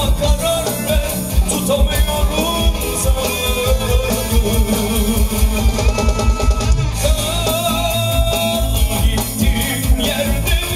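Live band playing a Turkish song with a steady beat: drum kit, electric guitar and a plucked lute, with a male singer's voice at times.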